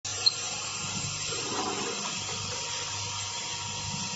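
Steady hissing noise of running packaging machinery, with a single sharp click about a quarter second in.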